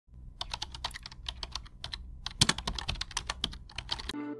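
Rapid, irregular clicking like keys being typed on a computer keyboard, a sound effect laid under a hand-drawing animation, with a faint low hum beneath. One click about two and a half seconds in is louder than the rest.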